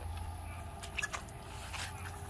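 Footsteps through wet grass: a few faint soft squishes and clicks over a low steady hum.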